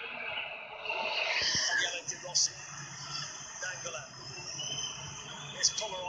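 Football stadium crowd noise heard through a TV match broadcast: a steady murmur, with a few brief sharp sounds standing out.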